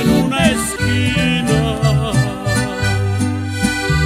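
Instrumental passage from an accordion, guitar and guitarrón trio playing a ranchera in G major: the accordion carries a wavering melody over strummed guitar chords and a stepping guitarrón bass line.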